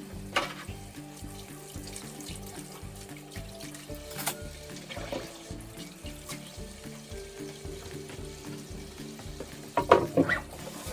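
Water running from a kitchen tap into a stainless steel sink as dishes are washed by hand, with a few sharp clinks of dishware and a louder clatter near the end. Background music with held notes plays underneath.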